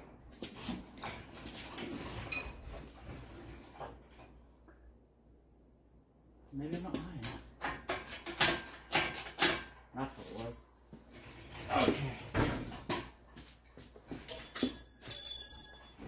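Wordless voice sounds, murmurs of effort, come in two stretches. Near the end there is a short burst of sharp metallic clinks with a high ringing.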